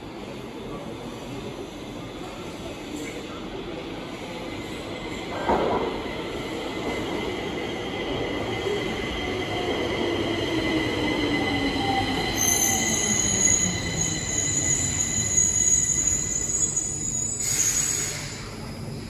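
Stockholm metro train arriving through the tunnel and braking into the station, growing louder as it nears. Its motor whine falls steadily in pitch as it slows, and a high wheel squeal sets in over the last few seconds before it stops. There is a single clunk about five seconds in and a short hiss right at the end.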